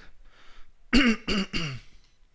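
A man coughing to clear his throat: a quick run of three short, harsh coughs about a second in.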